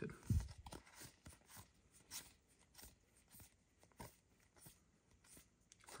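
Faint, scattered soft rustles and light clicks of trading cards being slid across one another as they are flipped through by hand.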